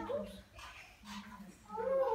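A young child's brief high-pitched whine at the start, then children's voices starting up again near the end. A low steady hum runs underneath.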